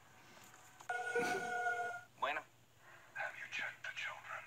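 A steady electronic beep of several pitches, held for about a second, followed by short bits of voice.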